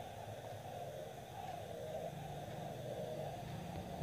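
Faint, steady room noise and microphone hiss, with no distinct sound.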